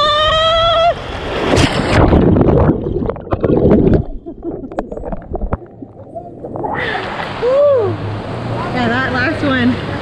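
A woman's held scream ends about a second in as the body slide drops her into the splash pool: a loud rush of splashing water for about three seconds, then softer sloshing and gurgling close to the microphone. Voices come in after about seven seconds.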